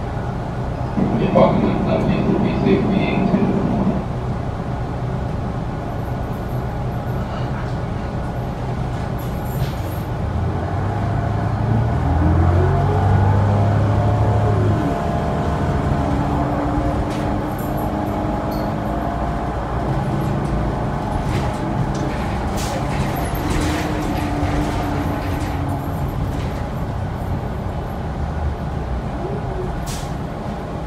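Inside a New Flyer Xcelsior XD40 diesel city bus: the engine and drivetrain run over a steady road rumble. About twelve seconds in, the engine pitch rises and then falls as the bus pulls away.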